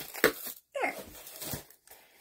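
Cardboard book mailer being handled and pulled open, with one sharp click a moment in, and a woman's brief "there" as the box comes open.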